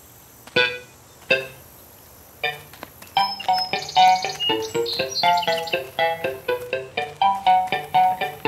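Cartoon background music: two single struck notes, then from about two and a half seconds in a bouncy tune of quick, short notes.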